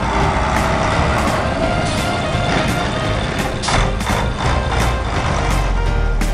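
Truck engine sound effect with reversing beeps, laid over background music that has a steady beat of about two strokes a second.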